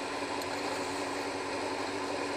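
Kawasaki ZX-7R's inline-four engine running steadily at a constant cruising speed, a level hum mixed with road and wind noise.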